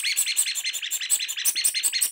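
A rubber duck being squeezed over and over, squeaking in quick, even succession, about six or seven squeaks a second.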